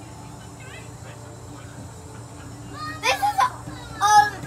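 A young child calling out in a high-pitched voice, twice in quick succession about three seconds in, over a steady low hum and faint voices.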